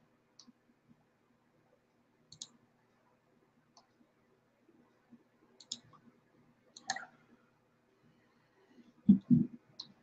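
A computer mouse clicking a few times at scattered intervals over a faint steady hum, as Bible software is switched to another translation. A brief low vocal sound comes near the end.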